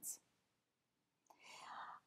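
A pause in a woman's speech: near silence, then a soft in-breath over the last half second or so.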